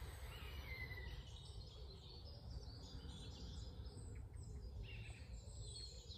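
Faint outdoor ambience: birds chirping now and then over a steady low rumble.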